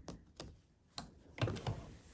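A few faint, sparse clicks, then a brief soft scuffle about one and a half seconds in, as the quilted table runner is handled at the sewing machine.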